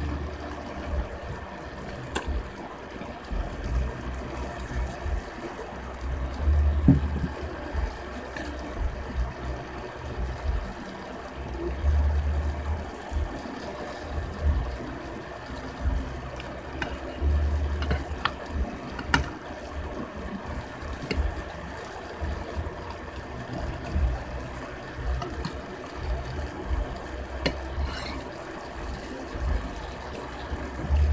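Eating ramen noodles with a fork and spoon: a few sharp clinks of metal utensils against the bowl over uneven low thumps and rumbles of chewing and handling close to the microphone.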